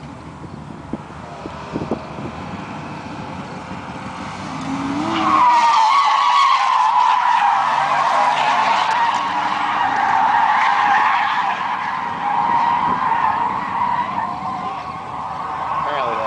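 After a few quieter seconds, a drifting car's tyres squeal in a long, wavering screech that lasts about ten seconds.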